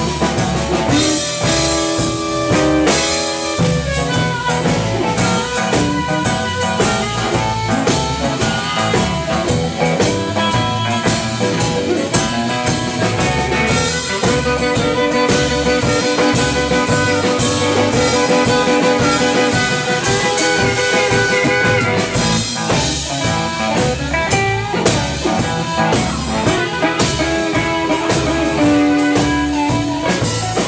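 Live blues band playing an instrumental passage with no singing: harmonica played cupped against the microphone, over electric guitar, bass and drum kit. A few long held notes come near the middle.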